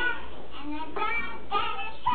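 A young child singing in a high voice, in short phrases with brief breaks.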